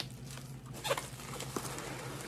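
Cardboard shipping box being opened by hand: its flaps are pulled up and back, giving soft scraping and a few scattered taps, the sharpest a little under a second in.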